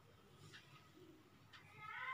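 Near silence: faint room tone, with a faint high, wavering call beginning near the end.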